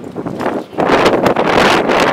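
Wind buffeting the microphone outdoors: a rushing noise that swells about a second in and holds.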